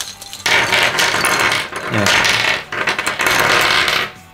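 A clear plastic bag crinkling loudly as it is handled and opened, and a handful of small gold-plated metal jack plug connectors clinking as they tip out onto a desk. The crinkling starts about half a second in.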